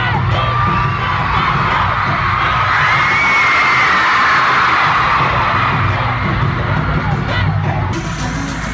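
Loud live pop music with a heavy, pulsing bass beat in a big arena, with a crowd of fans screaming over it.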